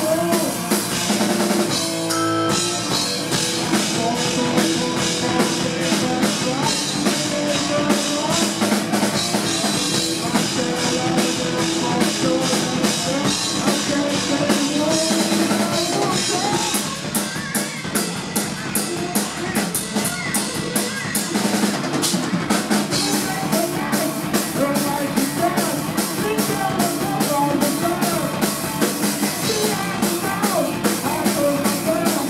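Hard rock band playing live: distorted electric guitar through Marshall amplifiers, electric bass and a drum kit with steady, busy drumming, with a brief break about two seconds in.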